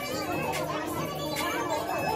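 Store background music playing under indistinct voices of other people talking.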